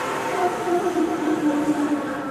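Opera chamber ensemble with strings playing a dense, held passage of several pitches over a hissing wash, one line sliding slowly down in pitch.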